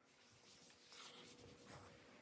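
Faint rubbing of a microfibre cloth wiping over a kitchen worktop, barely above silence.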